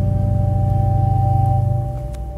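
Pipe organ holding a chord with a strong, full bass; near the end the loud chord drops away, leaving softer sustained notes.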